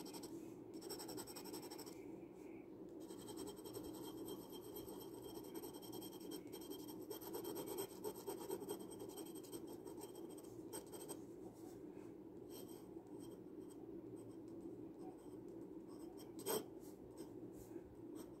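Glass dip pen's glass nib scratching faintly across sketchbook paper, making short strokes and then writing. A single brief tap near the end.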